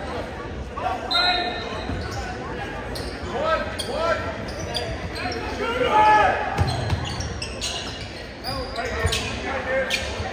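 Gym sounds during a basketball game: a basketball bouncing on the hardwood floor, sneakers squeaking, and players' and spectators' voices, all echoing in the large hall.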